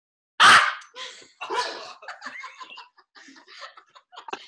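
A single loud cough-like burst about half a second in, made to cover the sound of Velcro being pulled open, followed by scattered laughter.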